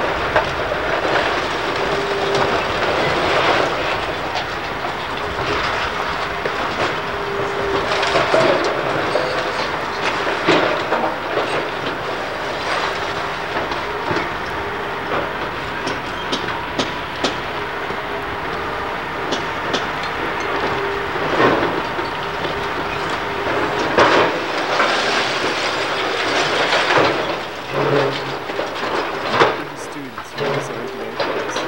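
Hydraulic demolition excavator working steadily while its grapple tears into brick and concrete walls; broken masonry and timber crash and clatter down again and again, with louder crashes in the second half.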